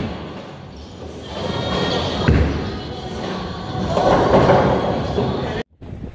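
Bowling ball rolling down a wooden lane toward the pins, with a sharp thud about two seconds in and a louder stretch of noise around four seconds, echoing in a large bowling hall.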